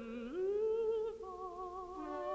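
Contralto voice and alto flute in slow, atonal chamber music. A low held note slides up to a higher pitch, and a second wavering note enters a little past one second.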